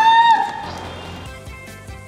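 A woman's high-pitched excited squeal, held briefly and ending about half a second in, followed by background music with a steady beat.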